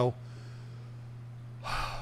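A person's audible intake of breath close to a microphone, a short breath near the end, over a steady low hum.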